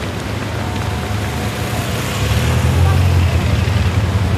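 Low vehicle rumble over steady outdoor noise, growing louder about two seconds in.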